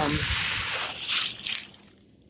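Footsteps rustling and crunching through dry leaf litter and grass, with a couple of louder crunches about a second in, stopping near the end.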